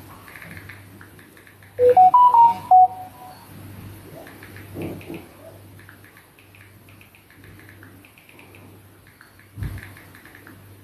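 A quick run of about five clear notes, rising then falling within about a second, like a short chime or jingle, about two seconds in; faint short high sounds repeat throughout over a steady low hum.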